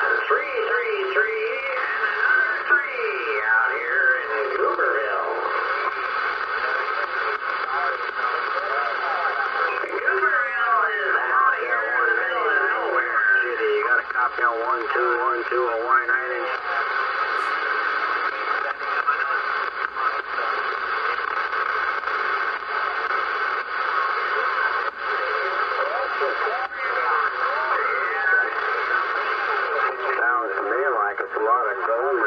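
Uniden Bearcat 980SSB CB radio receiving channel 38 lower sideband (27.385 MHz): distant long-range (skip) stations' voices come through the speaker thin and narrow over steady static. The voices are thickest in the first half; after that, static mostly fills the gap until voices return near the end.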